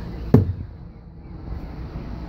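A single knock about a third of a second in, as a hinged exterior compartment door on a motorhome is shut, with a short ring after it, over a low steady outdoor background noise.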